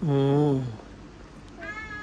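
A short drawn-out vocal sound in a low, man's pitch, falling away at its end, followed near the end by a brief high-pitched toddler vocalisation.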